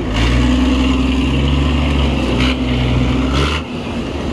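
Nissan Navara pickup's engine working hard under steady load as it tows a stuck truck out of the mud on a rope. It holds a steady pitch, then eases off about three and a half seconds in.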